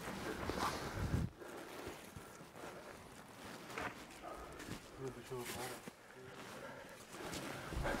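Footsteps and rustling of clothing and gear as people move along a dirt trench, with low muffled voices in the background. A low rumble sounds in the first second or so.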